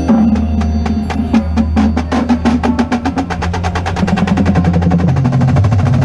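Marimba played with mallets in a fast passage of rapid, even strokes that grow denser in the second half, over a sustained low bass.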